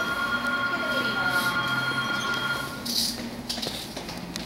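Aerial ropeway cabin running along its steel cables: a steady, high squealing whine made of several tones, which dies away about three seconds in.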